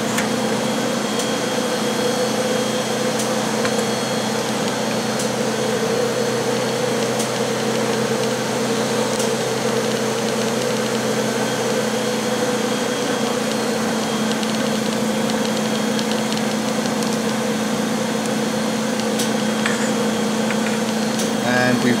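Steady machine hum with a low, even drone from the EVG 520IS semi-automatic wafer bonder and its support equipment running idle while the bonded wafers cool, with a few faint ticks.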